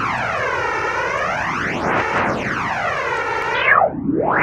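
Electronic music intro: a steady synthesized noise swept by a flanger effect, its jet-like whoosh rising and falling about every two seconds.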